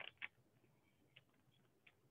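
Near silence: room tone, with two faint short clicks at the very start and one more tiny tick about a second in.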